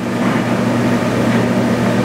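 Steady low hum with an even hiss underneath: the room tone of the meeting-room recording in a pause between words.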